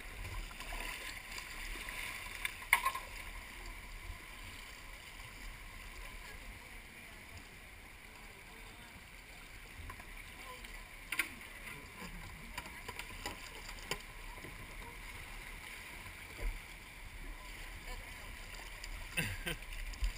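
Steady rush of a shallow river's current around plastic whitewater kayaks, with a few short sharp knocks and paddle splashes.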